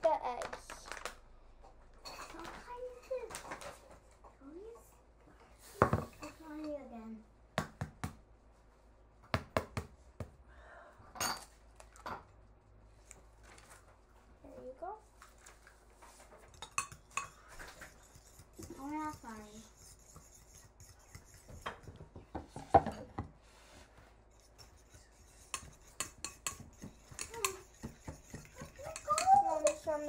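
Fork beating eggs in a ceramic bowl: metal clinking and tapping against the bowl at irregular intervals.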